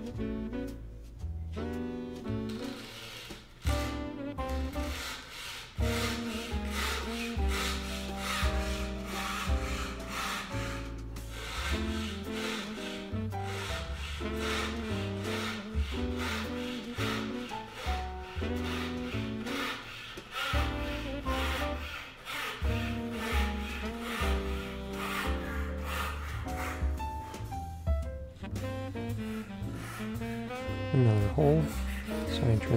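Jazz background music with a bass line, over the rasp of a marquetry chevalet's fret-saw blade cutting through a veneer packet of green-dyed sycamore in repeated short strokes.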